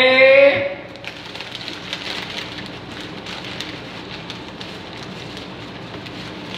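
A man's loud, drawn-out vocal exclamation for about a second at the start, then a steady crackling patter of small clicks.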